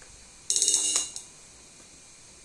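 A quick rattle of about eight rapid strokes on a Yamaha electronic cymbal pad gives a bright, metallic cymbal sound for half a second, then cuts off and fades quickly.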